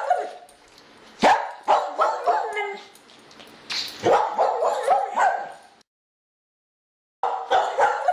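A dog barking in short, sharp runs of barks. The sound cuts out to dead silence for about a second and a half near the end, then the barking starts again.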